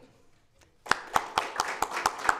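Hands clapping in applause, starting about a second in with distinct, evenly spaced claps about five a second.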